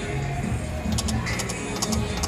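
Video slot machine spinning its reels, with the game's electronic music playing and two quick runs of sharp clicks, one about a second in and one near the end, as the reels stop.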